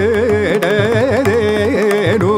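Carnatic music: a melody with rapid wavering ornaments (gamakas) carried by voice and violin, over steady mridangam strokes.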